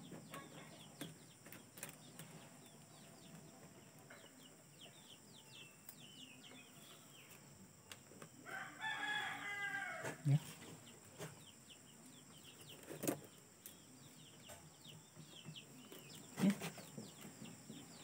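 A rooster crowing once in the background about halfway through, over a run of quick, high, falling bird chirps. Scattered sharp clicks from the stiff plastic mesh as it is rolled and handled, the loudest a little past two-thirds of the way through.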